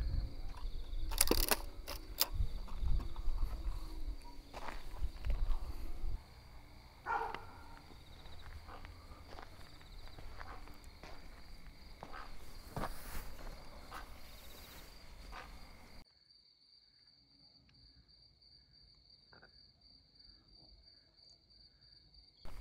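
Night-time outdoor ambience: crickets keep up a steady high chirring while footsteps and handling knocks sound over a low rumble. About three-quarters of the way through, the rumble and knocks cut out suddenly, leaving faint crickets chirping in an even pulse.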